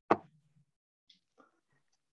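A single sharp pop about a tenth of a second in, dying away within half a second, followed by near silence with a couple of very faint ticks.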